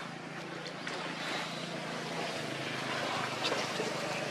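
A steady low motor-like hum under a broad hiss of background noise, with a few faint short clicks.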